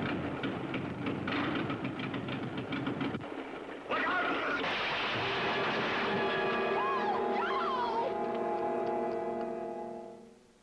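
Small plane's engine running unevenly as it runs out of fuel, then a sudden loud crash about four seconds in. A dramatic orchestral chord swells over the aftermath and fades away near the end.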